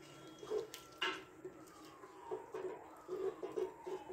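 Wooden spoon stirring a wet beef curry in an aluminium pressure cooker, with soft scrapes and knocks against the pot.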